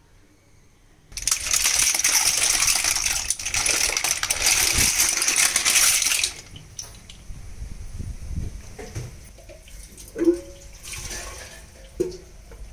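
Boiled clams and their cooking water tipped out of an aluminium pot onto a banana leaf: a dense clatter of shells with splashing water starts about a second in and lasts about five seconds. Scattered clicks of shells and a short metallic ring follow.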